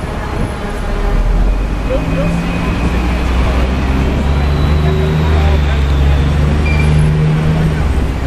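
City street traffic heard from among a crowd of cyclists. A low, steady engine hum from nearby motor vehicles sets in about two seconds in, with voices of the crowd over it.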